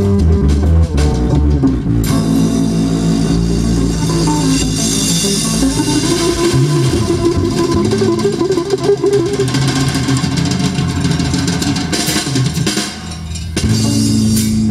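A band playing an instrumental passage of a song, with guitar, bass and drum kit; the music drops away briefly near the end before a new chord comes in.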